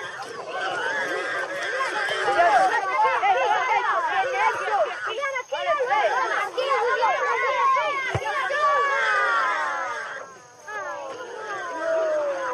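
Several children shouting and calling out over one another, a dense tangle of high voices rising and falling without clear words.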